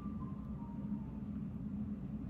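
Steady low background hum of room noise, with no speech.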